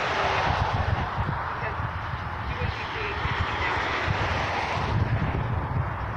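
Steady engine-like noise with a broad hiss, dropping away about five seconds in, over irregular low rumbling of wind buffeting the microphone. Faint voices are mixed in.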